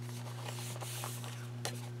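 Steady low electrical hum with quiet paper handling over it as a kraft-paper journal's pages are moved and pressed, with a couple of faint light taps.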